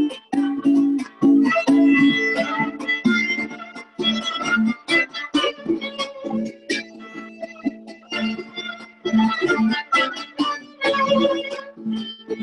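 Venezuelan cuatro strummed in a quick, steady rhythm, with a violin playing a melody over it: a cuatro-and-violin duo playing a Chilean tune.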